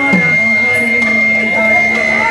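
Amplified voices singing a devotional kirtan in held, gliding notes, with a steady high ringing tone sustained underneath.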